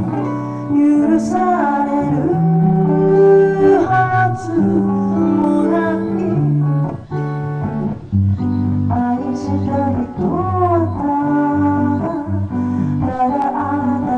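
A live song: a woman singing into a microphone, accompanied by an electric guitar.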